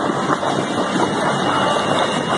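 Steady rushing and bubbling of water from a hydromassage pool's jets.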